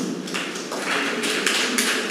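Audience applause: a dense patter of many hands clapping, starting about a third of a second in.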